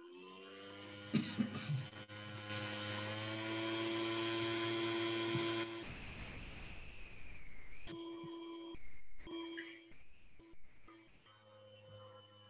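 A steady held tone with several overtones, like a sustained musical note, lasting about six seconds, then a hiss and a few short broken tones.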